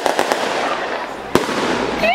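A string of firecrackers going off in a dense, rapid crackle, with one sharp bang about a second and a half in.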